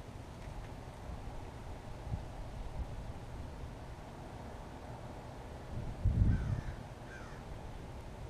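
A bird gives two short falling calls near the end, over a steady low outdoor rumble, with a louder low rumble swelling briefly about six seconds in.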